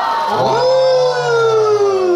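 Voices holding long, drawn-out sung notes rather than talking: a low held note under a higher voice that slides slowly down in pitch from about half a second in.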